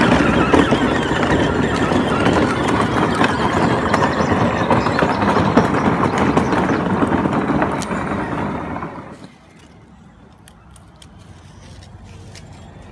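Riding lawn mower running nearby, loud and steady, then falling away sharply about nine seconds in, leaving only faint clicks.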